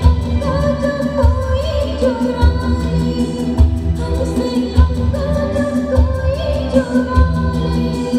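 A woman singing a Hindi film song live into a microphone, her voice gliding and ornamenting over a band accompaniment, with a deep drum stroke about every 1.2 seconds.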